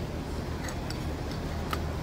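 A few light ticks from the metal parts of a Toyota Hilux manual free-wheeling hub as it is turned and seated by hand, over a steady low hum.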